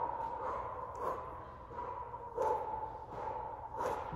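A woman exhaling hard in short bursts, about five times, as she twists through Russian-twist crunches.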